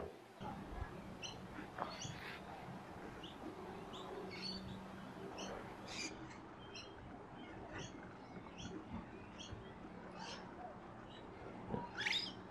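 Faint birdsong: many short chirps and calls scattered throughout, over a low steady hum.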